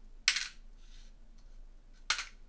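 Small board-game resource pieces (camels, gold, spice, silk) clattering as they are handed back to the supply: one sharp clatter about a quarter second in, then a few faint clicks.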